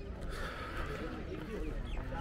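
Faint, indistinct chatter of visitors' voices over a low, steady rumble of outdoor ambience.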